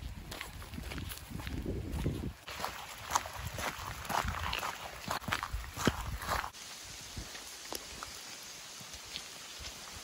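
Footsteps on wet grass and a wet path, with a run of small scuffs and clicks. They go quieter after about six and a half seconds, leaving only a few ticks.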